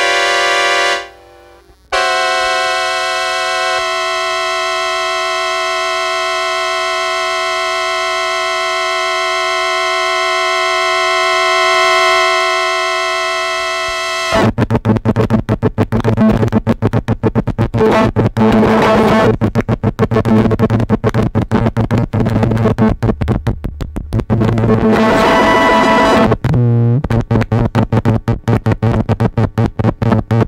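Circuit-bent Yamaha PSS-9 Portasound keyboard: a short chord, then a steady held chord for about twelve seconds. Halfway through, the chord breaks suddenly into a rapid, stuttering, noisy glitch stream, which keeps going with no key held: the synth crashing from a voltage-starve mod.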